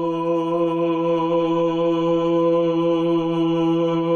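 A man's voice holding one low, steady note in Serbian Orthodox church chant.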